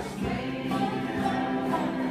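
A large bluegrass group singing together over acoustic string accompaniment, with guitars and upright basses.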